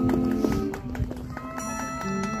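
High school marching band playing a slow arrangement. A held wind chord thins out around the middle, leaving light clicking percussion, and a new wind chord swells in near the end.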